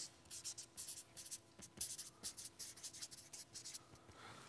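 Marker pen writing on a flip-chart pad: a quick run of short, scratchy strokes, faint.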